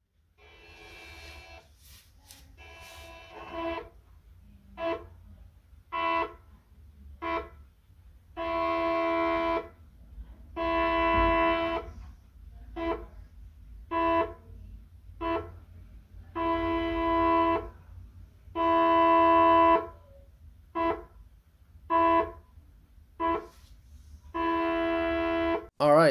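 NEMA 14 stepper motor (14HS10-0404S) driven by an A4988 in full steps at 100 RPM, buzzing with a steady pitched tone each time it moves. It makes runs of about a second (two full turns one way, then two turns back) and short blips for the quarter and half turns, with a pause of about a second between moves, over a steady low hum. The sequence repeats about twice.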